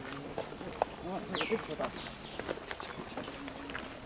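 Faint background voices of people talking, with footsteps on a paved path.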